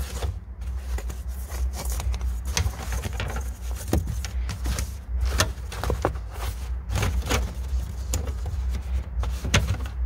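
Irregular clicks and knocks of loose storage-compartment trim, a metal frame and its panel, being shifted and set down on the carpeted floor, over a steady low rumble. The parts are loose because their bolt-down hardware is missing.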